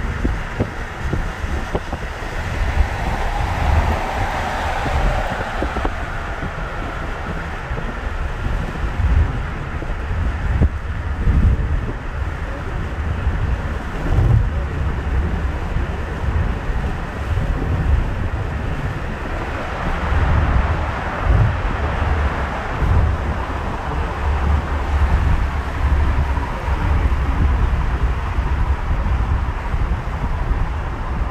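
Wind buffeting the microphone from a moving car, over steady road and tyre noise, with passing traffic swelling louder a few seconds in and again about twenty seconds in.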